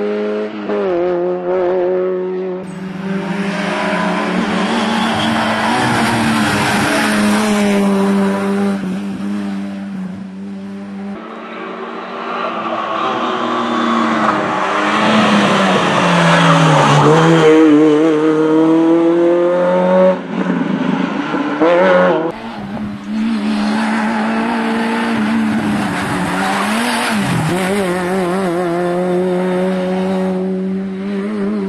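Citroën Saxo N2 rally car's four-cylinder engine revving hard through corners on a tarmac stage, its pitch rising through the gears and dropping sharply on lift-off and downshifts. The pass repeats several times as the shots change.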